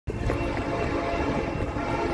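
A train horn sounding over the low rumble of a passing train, starting abruptly and holding steady.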